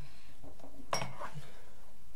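A single sharp metallic clink about a second in, from cable plugs being handled while equipment is connected.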